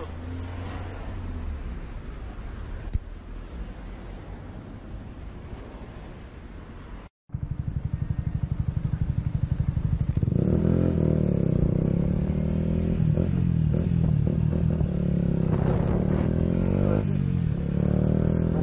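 Yamaha motorcycle engine running at a low idle. After an abrupt cut about seven seconds in, it pulls away and accelerates, getting louder a few seconds later, with its pitch rising and dropping through gear changes near the end.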